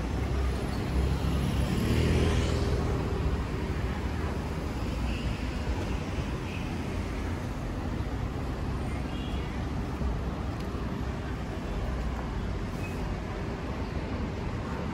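Street traffic noise, with vehicles going past. It is loudest about two seconds in, as one passes close.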